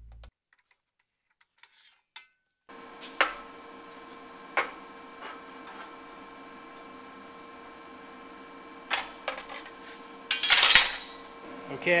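Steel clamps and parts knocking and clinking on a steel fixture welding table while square tubing is clamped and squared up on a round plate. There are a few separate knocks, then a louder clatter near the end, over a steady shop hum, after a near-silent first couple of seconds.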